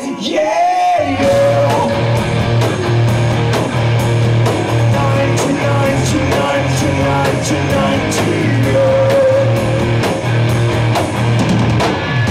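Live rock band playing: electric guitar, bass guitar and drum kit with a singer. After a held note, the bass and drums come in together about a second in, and the full band plays on steadily.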